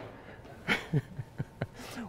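A man chuckling quietly to himself: a few short, breathy bursts of laughter.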